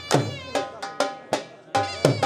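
Punjabi dhol beaten in a driving ludi rhythm, about two to three strokes a second, with a shehnai playing a sustained reedy melody over it.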